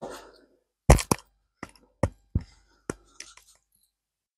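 A series of sharp metallic clicks and knocks, about seven in two and a half seconds and loudest about a second in, as a riveted steel angle piece and hand tools are handled and set down on a workbench.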